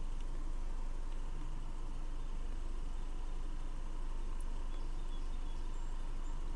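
2010 Subaru Forester's flat-four engine idling steadily in the background, heard as a low, even hum with faint noise above it.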